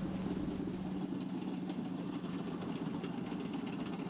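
Main battle tank's engine running with a steady low hum.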